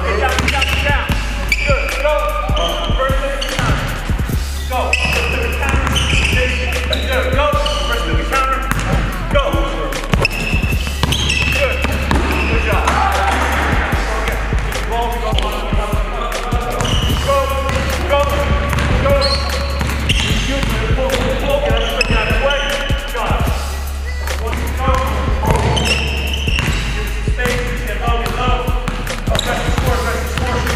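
A basketball dribbled on a hardwood gym floor in quick runs of bounces, over a music track with vocals and a deep bass line that drops in and out every few seconds.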